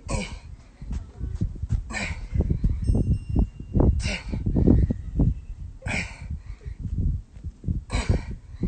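A man breathing hard through push-ups with a child on his back: a sharp exhale about every two seconds, over irregular low rumbling on the microphone.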